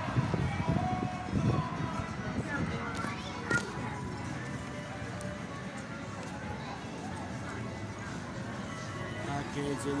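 Background music and people's voices in a busy amusement-park street, with a single brief knock about three and a half seconds in.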